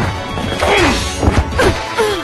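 Animated fight sound effects: a quick series of about five hits and clashes in two seconds over dramatic background music.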